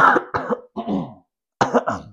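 A woman coughing about four times into the crook of her elbow, the first cough the loudest.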